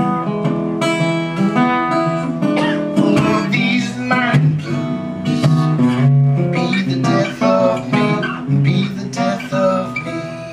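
Small-bodied f-hole acoustic guitar playing a blues instrumental break solo: separate picked melody notes over a moving bass line, at a steady pace.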